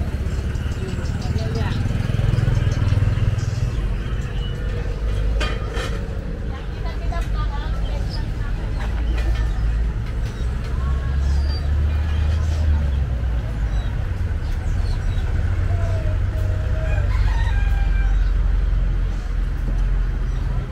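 A rooster crowing over a steady low rumble of outdoor street noise.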